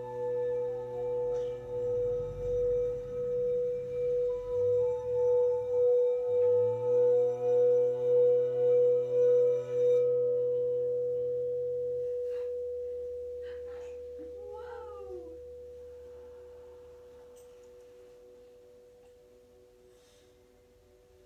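Crystal quartz singing bowl sung by rubbing a wand around its rim: one steady ringing tone that wobbles in loudness with each circuit of the wand and swells over about ten seconds. The wand is then lifted and the tone rings on, fading slowly. A brief wavering cry sounds partway through the fade.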